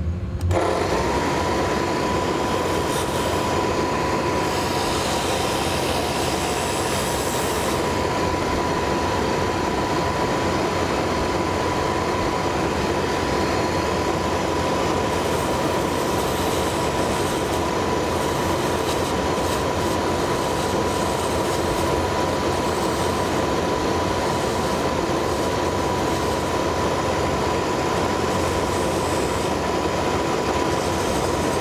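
A small lathe turning a wooden handle blank, with its dust extraction running. It starts abruptly about half a second in and then holds as a steady rushing noise with a constant high whine.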